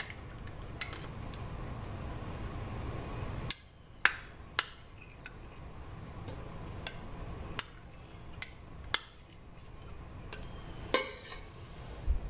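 A metal spoon clinking and tapping against a small glass bowl as soft ghee is scraped out into a stainless steel pot, with about a dozen irregular sharp clinks.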